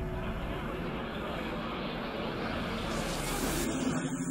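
A steady rushing noise from the music video's soundtrack, growing slightly louder before its high end drops out near the end.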